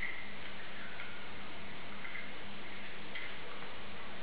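Steady background hiss with a low hum, and faint short ticks roughly once a second.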